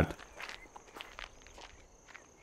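Soft footsteps of a group of people walking, a few scattered steps, with a thin steady high tone behind them.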